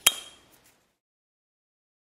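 A single sharp metallic click with a brief ring as the hinged flap on a Kawasaki ZX-7R fuel filler cap snaps shut. Two faint ticks follow about half a second later.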